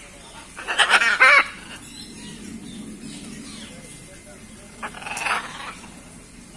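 Blue-and-gold macaws calling: a loud, harsh squawk about a second in, and a second, quieter squawk near the end.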